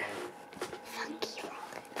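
A person whispering quietly, the words indistinct.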